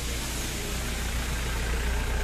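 A vehicle engine idling, a steady low hum with even background noise over it.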